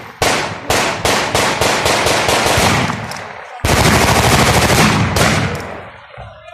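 Gunfire: a string of quick, uneven single shots, then about three and a half seconds in a continuous automatic burst lasting over a second, followed by a few last shots.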